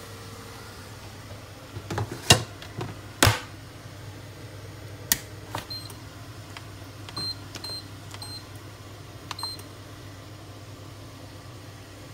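Galanz rice cooker: a few knocks and clicks as the inner pot goes in and the lid is shut, then about five short high beeps from its control panel as buttons are pressed to start cooking.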